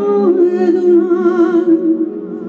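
A woman singing live into a microphone: her voice slides down onto a long held note with vibrato, released near the end, over sustained keyboard chords.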